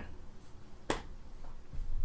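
A single sharp click about a second in, over low room noise.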